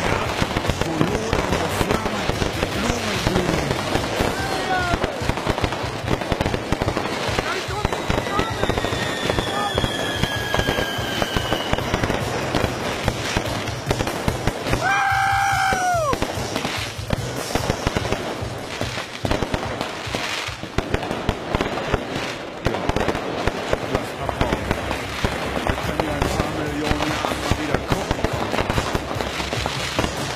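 Many fireworks going off at close range: a dense, continuous barrage of bangs and crackling from firecrackers and rockets. Whistles glide down in pitch around eight to twelve seconds in, and a loud whistle about fifteen seconds in drops in pitch as it ends.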